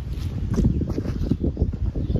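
Wind buffeting the microphone outdoors: a loud, irregular low rumble.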